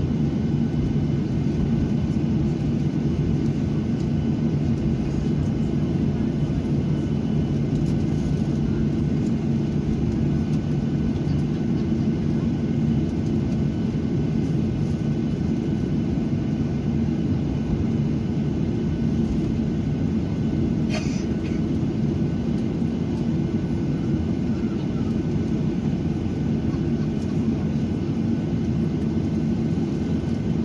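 Cabin noise of a Boeing 737 taxiing after landing, heard from a window seat over the wing: the jet engines' steady drone at taxi idle with a faint high whine. A single short click about 21 seconds in.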